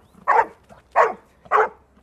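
A dog barking repeatedly, one bark about every 0.6 seconds, each short and dropping in pitch.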